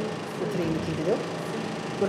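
Speech: a woman talking.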